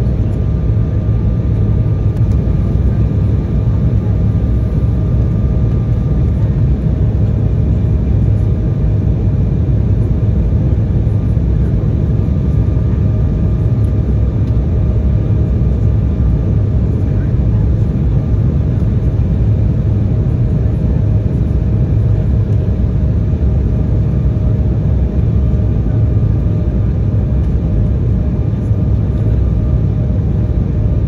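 Loud, steady cabin noise inside an Embraer 175 jet airliner on descent: its General Electric CF34 turbofan engines and the airflow make a constant low rumble, with a faint steady hum over it.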